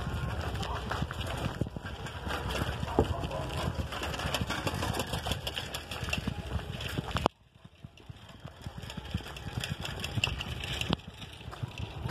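Riding noise from a bicycle: a steady low rumble with irregular rattles and clicks, and wind buffeting the phone's microphone. The noise cuts out abruptly about seven seconds in, then builds back up.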